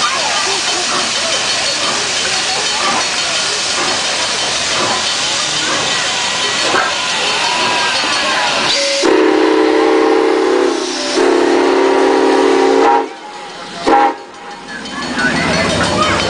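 Milwaukee Road 4-8-4 Northern No. 261 steam locomotive passing close by, with a loud steady hiss of steam. About nine seconds in, its whistle sounds a deep chord, called a plaintive moan, in two long blasts, then once briefly near the end.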